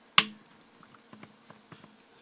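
A single sharp click about a fifth of a second in as a TomTom XL GPS unit snaps into its mounting cradle, followed by a few faint handling ticks.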